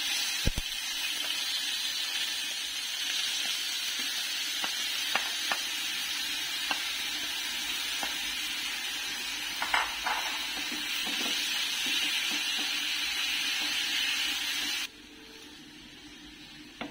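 Grated beetroot sizzling as it fries in hot ghee in a nonstick pan, with occasional taps and scrapes of a wooden spatula stirring it. The sizzle drops suddenly much quieter about a second before the end.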